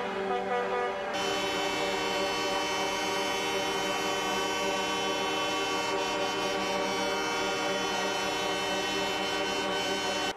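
Several truck air horns blaring together in a long, sustained discordant chord, with more horns joining about a second in.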